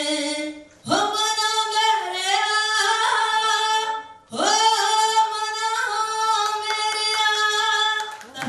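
A woman singing unaccompanied into a handheld microphone, in long held notes, with two short pauses about a second in and about four seconds in.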